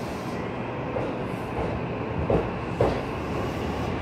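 JR East E233 series 3000 electric commuter train pulling out of a station and gathering speed, a steady rolling rumble with a couple of sharp wheel clicks over rail joints about two and a half seconds in.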